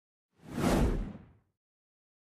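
A single transition whoosh sound effect, about a second long, swelling up and fading out with a deep rumble beneath it.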